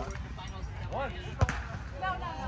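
A volleyball is struck sharply by a player's hand once, about one and a half seconds in, just after a short shouted call from a player.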